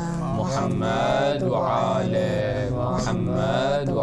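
A man's voice chanting in melodic phrases about a second long, with short breaths between them, over a steady low drone.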